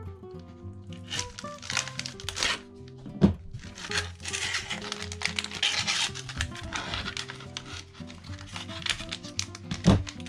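Foil pouch of a Mainstay emergency energy bar being cut and torn open and crinkled as it is peeled back, with two sharp knocks, one about three seconds in and one near the end. Background music plays throughout.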